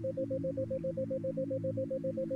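A 7 Hz isochronic tone: a steady tone near 528 Hz pulsing on and off about seven times a second, over a sustained low background-music drone.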